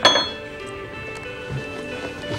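One sharp clink of dishware on a table at the very start, ringing briefly, over soft background music.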